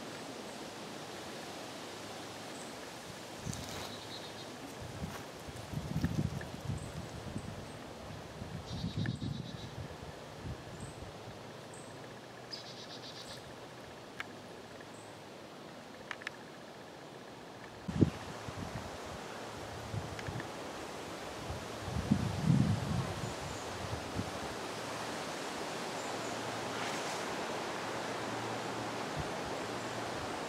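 Outdoor woodland ambience: a steady hiss of breeze and rustling leaves, with a few low thumps and scattered clicks, and short faint high trills of insects or birds a few times in the first half.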